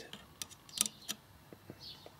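A few faint, sharp plastic-and-metal clicks as a thin printed-circuit port labeller is pressed down over a Raspberry Pi's GPIO header pins, spread irregularly across about two seconds.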